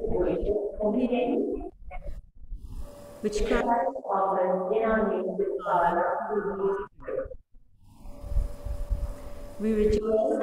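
A person's voice talking indistinctly, with short pauses about two seconds in and again about three quarters of the way through.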